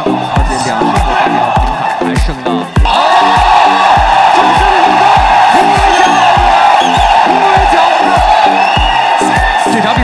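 Background music with a steady thumping beat. About three seconds in, a loud mass of crowd noise and excited voices rises over it and holds.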